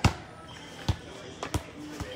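A soccer ball bouncing on the floor: a series of sharp thumps under a second apart, the first the loudest.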